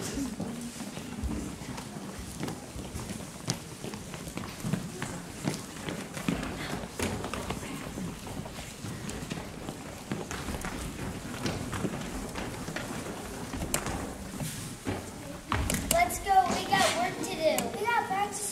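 Many children's footsteps tapping and shuffling on a wooden gym floor as a group walks across, over a low murmur of voices. Children's voices come in near the end.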